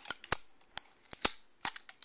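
Tape being picked and peeled off the bottom of a box: about seven sharp, irregular snaps and clicks.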